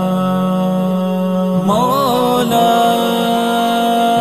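Wordless chant-like naat intro: layered held notes over a low drone. A melodic line rises and falls just before two seconds in, then settles onto a steady higher held note.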